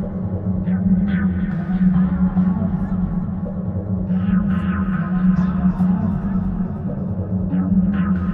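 Glitch/IDM electronic music: a steady low drone over dense bass, with short swooshing sweeps higher up that grow busier about halfway through.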